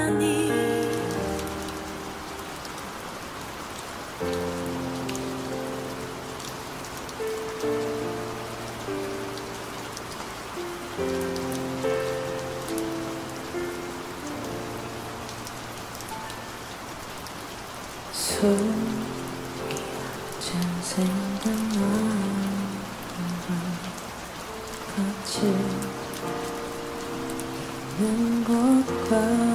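Steady rain added as a background layer over a playlist of slow ballads. The last notes of one song die away in the first second or so, and about four seconds in the soft intro of the next begins with held chords; a lower melody line comes in about two-thirds of the way through.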